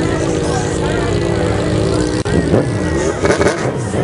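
Sport motorcycle engines running among crowd voices. The sound drops out for an instant about two seconds in, then the engine pitch rises and falls as the engines rev.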